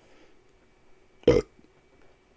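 A man burps once, short and loud, just past a second in, over faint room tone.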